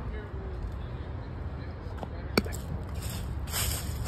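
Outdoor ambience with a steady low rumble, a single sharp click a little over two seconds in, and a brief rustle near the end.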